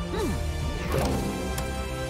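Mariachi band music from the film soundtrack, with string bass, violin and trumpet, and a crashing impact sound effect over it.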